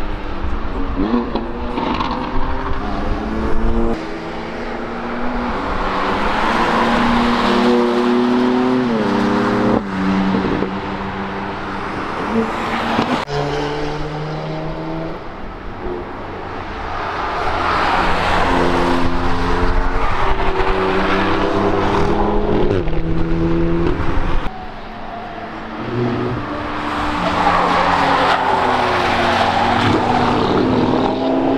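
Several track cars accelerating past one after another, engines revving up through the gears with repeated upshifts. Each car swells and fades as it goes by, with tyre and wind rush under the engine note.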